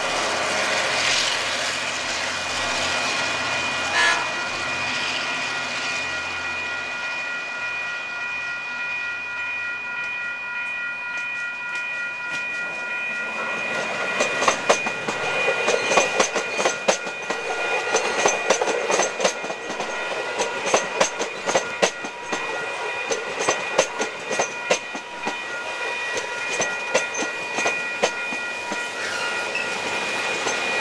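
A diesel-hauled suburban passenger train passes close by: a locomotive's engine hum fades over the first few seconds, then the carriage wheels clatter over rail joints from about halfway on. Steady ringing tones from the level crossing's warning bells run underneath.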